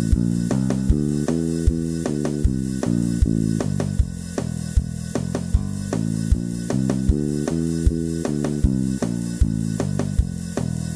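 Peavey Cirrus electric bass played fingerstyle, running the E Locrian scale up and down in open position, one even note after another over a drum backing track with a steady beat.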